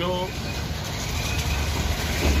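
A motor vehicle engine running nearby, a low steady rumble that grows a little louder toward the end.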